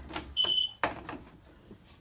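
A short, high electronic beep lasting under half a second, then a sharp click about a second in, with a few smaller knocks.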